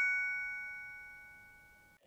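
A bell-like chime, struck just before and ringing out in several clear high tones, fading away about a second and a half in.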